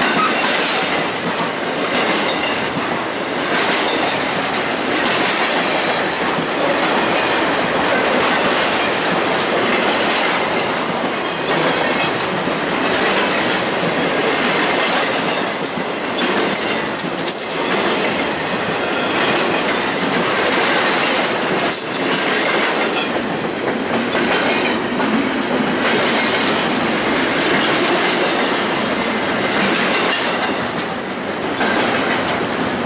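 Intermodal freight train rolling past close by, trailers on flatcars and double-stack container well cars, its steel wheels running steadily over the rails. A few sharp clanks break through, about halfway and again past two-thirds of the way in.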